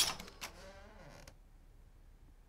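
A sharp hit, a second shorter one about half a second later, then a door creaking slowly with a wavering, gliding squeal that stops after about a second.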